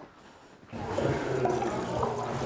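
Tap water running into a bathroom washbasin, starting suddenly a little under a second in and then running steadily.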